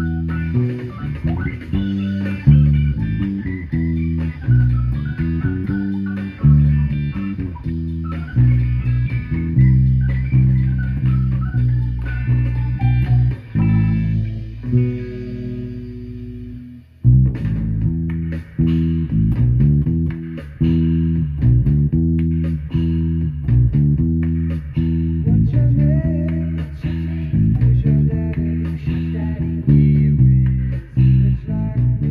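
Hollow-body electric bass guitar plucked in a rhythmic line, played along to a recorded rock song. A little under halfway through, the music drops to a held sound that fades for a few seconds, then the full song comes back in suddenly.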